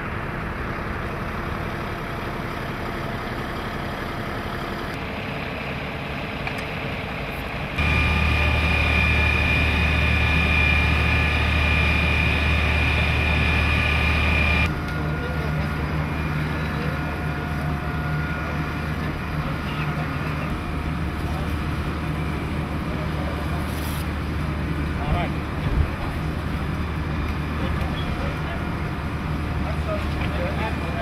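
Engines running steadily, with a louder, deeper stretch lasting about seven seconds in the middle that carries a high steady whine; voices in the background.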